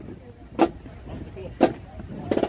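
A marching drum beating a slow cadence for a column of marchers: two single strikes about a second apart, over a steady low background of the moving crowd.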